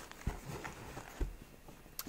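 Faint handling sounds: a few soft knocks as a small cardboard pack of firecrackers is set down on a blanket.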